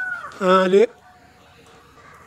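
An elderly man's voice, one short drawn-out spoken stretch about half a second in, with a faint, high, arching animal call overlapping it at the start.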